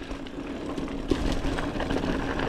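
Mountain bike rolling fast down a dry dirt singletrack: steady tyre noise and rumble with wind buffeting the microphone, and a faint steady hum underneath.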